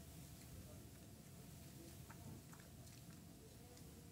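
Near silence: room tone with a faint steady hum and a few faint clicks about halfway through.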